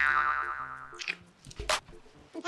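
A cartoon-style 'boing' comedy sound effect: a springy twang that rings out and fades away over about a second. A soft short knock follows near the end.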